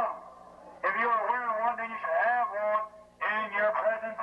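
Speech: a man's voice talking in two stretches, about a second in and again after about three seconds, with a short pause between.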